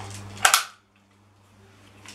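A single sharp mechanical click from the CYMA MP5 airsoft gun being handled while its hop-up is adjusted, about half a second in.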